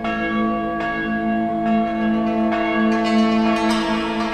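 Church bells struck at a steady pace, about one strike a second, each ringing on over a sustained musical drone.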